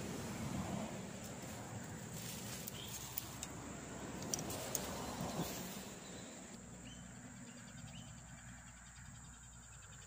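Insects chirring around a swamp pond: a steady high drone throughout, with a fast, even pulsing chirp coming through more clearly in the second half. Faint rustling and a few small clicks in the first half.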